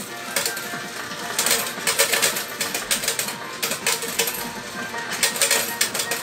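Coin hopper of a coin-operated pinball gambling machine paying out: a rapid, irregular clatter of coins dropping into the payout tray as the credits count down.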